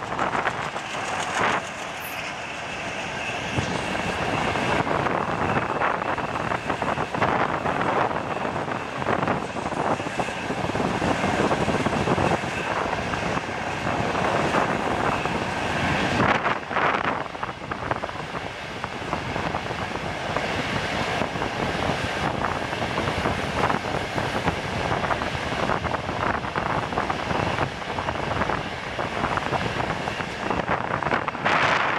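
Freight train of Facs ballast hopper wagons rolling past: a steady rumble of steel wheels on the rails, broken by rapid clacks as the wheels cross the rail joints.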